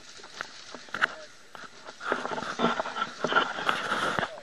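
Indistinct voices of a group of men talking outdoors, with scattered short clicks, getting busier and louder about halfway through.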